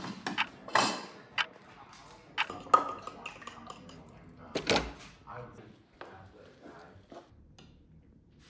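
Kitchen clatter: a fork and bowl clinking and utensils knocking on a frying pan while eggs are prepared. It comes as a string of sharp knocks and clinks, one briefly ringing, with a loud knock about halfway through.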